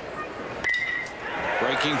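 Metal (aluminium) baseball bat striking a pitched ball about two-thirds of a second in: a sharp crack followed by a brief ringing ping, as the batter lines a base hit.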